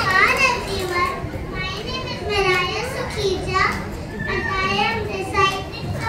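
A large group of young children chattering and calling out at once, their high-pitched voices overlapping with no single clear speaker.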